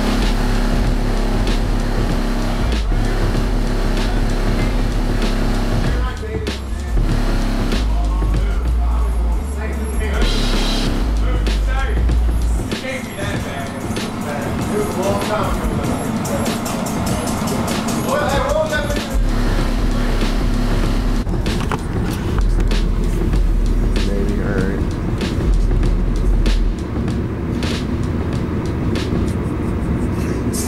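Bass-heavy music played loud through a car's subwoofer system, with deep bass notes that drop out for a few seconds in the middle and come back. Vocals in the song can be heard.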